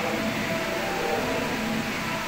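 Steady background noise with a faint hum and no distinct impacts.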